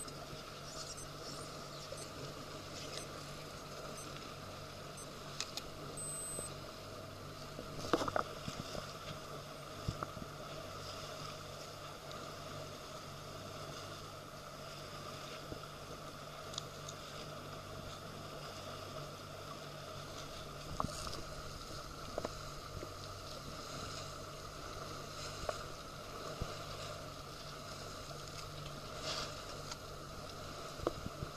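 A small boat on the water: a steady low hum from the boat's motor over water and wind noise. A few short knocks stand out, the loudest about eight seconds in.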